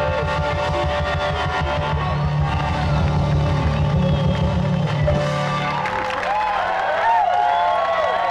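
Live rock band with guitars, drums and piano playing the close of a song, the bass and drums stopping about six seconds in. Crowd whooping and cheering follows the ending.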